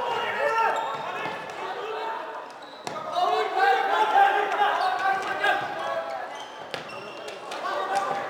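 Floorball play echoing in a large sports hall: a few sharp clacks of sticks striking the plastic ball, one about three seconds in and two near the end. Indistinct voices of players and nearby spectators run underneath.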